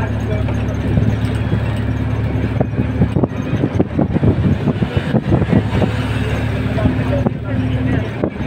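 Road and engine noise heard from inside a moving car's cabin: a steady low hum, with denser irregular noise in the middle few seconds.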